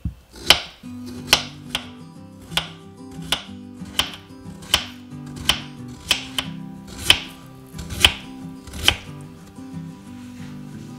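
Paring knife slicing peeled potatoes thin on a wooden cutting board: a sharp tap of the blade against the board with each slice, about once a second, over soft background music.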